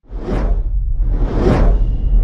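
Two cinematic whoosh sound effects, a short one peaking about a third of a second in and a longer one swelling and fading around a second and a half, over a deep, steady low rumble.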